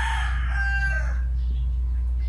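A rooster crowing once, a harsh call that ends about a second in. A steady low rumble on the microphone runs beneath it.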